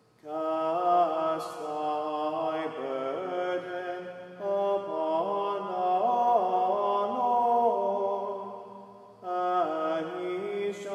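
A solo male voice singing an unaccompanied Gregorian chant introit, with long phrases that move in small steps around a few notes. The voice enters just after a silence. Near the end a phrase fades into the chapel's reverberation and the next one begins.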